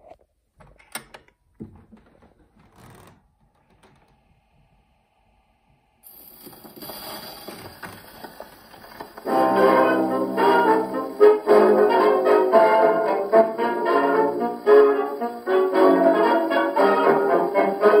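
A few faint clicks, then about six seconds in the hiss and crackle of a steel needle running in a 78 rpm shellac record's lead-in groove. About nine seconds in, a 1920s dance-band fox trot with brass starts, loud, played acoustically through an Orthophonic Victrola Credenza's horn.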